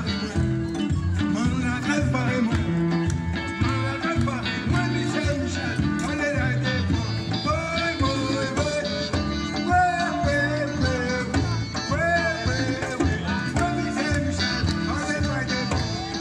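Live band playing an upbeat song, with a bass line, percussion keeping a steady beat, and an electric guitar and melody line above.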